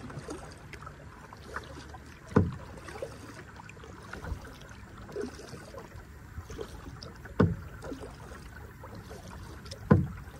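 Water lapping and trickling around a plastic kayak on a lake, with small splashes throughout and three louder, low plunks in the water about two and a half, seven and a half and ten seconds in.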